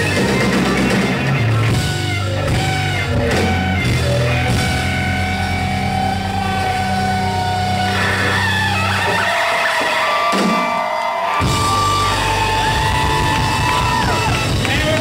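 Rock band playing live and loud: electric guitars, bass and drum kit. Near the middle the low end drops out for about two seconds, leaving held guitar notes, before the full band comes back in.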